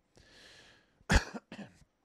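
A man's faint breath, then a short, sharp burst from his throat about a second in, with a smaller one just after: a brief laugh or cough.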